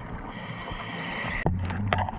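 Scuba diver breathing through a regulator underwater: a long hiss of inhaled air, then exhaled bubbles gurgling out for the last half second.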